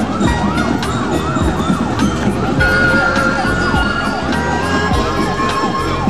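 A siren in a fast yelp, its pitch sweeping up and down about three times a second. Regular drum beats run under it, and held musical tones come in about two and a half seconds in.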